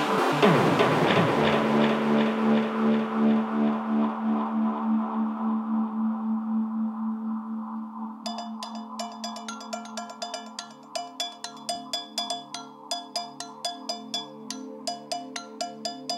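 Electronic dance music in a breakdown: the beat fades out in the first seconds with a falling sweep, leaving held synth chords whose brightness dies away. About halfway in, short crisp percussive ticks come in rhythmically over the chords, with no kick drum.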